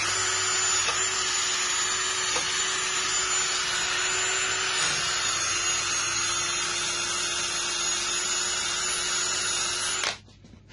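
Cordless drill spinning a wire brush against the piston crown of a Briggs & Stratton V-twin, scrubbing off carbon buildup. A steady motor whine with a scratchy scrubbing noise starts and stops abruptly, dipping slightly in pitch about halfway through.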